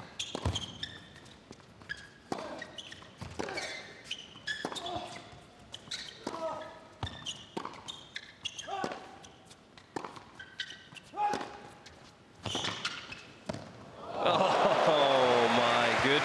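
Tennis rally on an indoor hard court: the ball is struck by rackets and bounces, a sharp knock every half second to a second, with short shoe squeaks between. Near the end the point finishes and the arena crowd breaks into loud cheering and applause.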